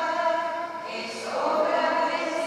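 A group of voices singing a closing hymn with long held notes. There is a brief dip about a second in, where a new phrase starts on a higher note.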